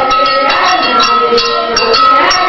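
Loud rhythmic percussion with a metallic ring, struck about four to five times a second, with voices singing along.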